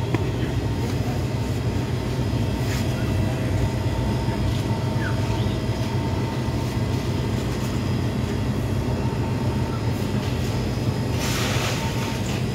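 Steady low rumble and hum of background machinery, with a faint constant whine and a few faint clicks. A short rustling noise comes near the end.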